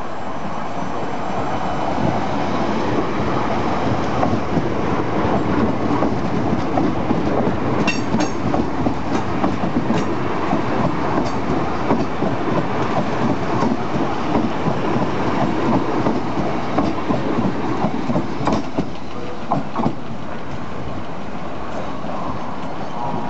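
Electric multiple-unit commuter train running slowly past, its wheels clattering over rail joints and pointwork, with a brief high wheel squeal about eight seconds in. The clatter grows louder about two seconds in and eases near the end.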